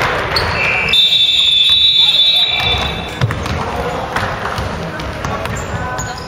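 Shrill, high-pitched signal sounding for about two seconds, starting about a second in: the end-of-game signal at an indoor basketball game, with the clock run out. Around it are players' voices and a basketball bouncing on a hardwood gym floor.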